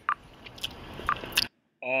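Faint clicks and wet mouth noises from lips close to the microphone, then a short gap of silence and a man's voice starting a long, drawn-out chanted note near the end.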